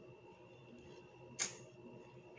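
A quiet room with a faint steady hum, broken by one short, sharp click about one and a half seconds in.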